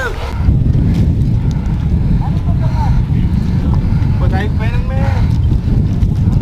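Wind buffeting the microphone: a heavy, uneven low rumble that sets in about half a second in, with voices faint beneath it.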